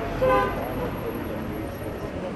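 A single short car horn honk, about a quarter second long, over the murmur of a crowd talking.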